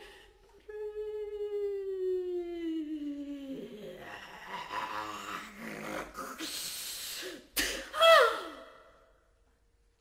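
Contemporary chamber music for bass flute, bass clarinet and female voice: a held tone slides slowly downward, then gives way to breathy, airy noise, a sharp click and a short, loud falling glide, after which the sound dies away to near silence.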